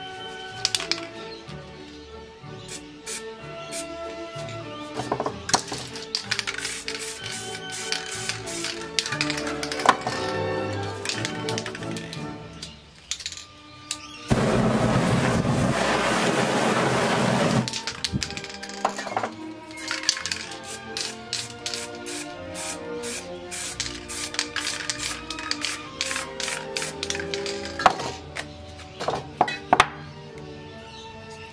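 Background music with scattered sharp clicks. About halfway through, a loud, steady rushing hiss lasts about three seconds and cuts off abruptly: spray paint fumes set alight in a burst of flame over the painting.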